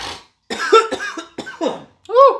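A man coughing, a short run of hacking coughs, which he puts down to pollen season.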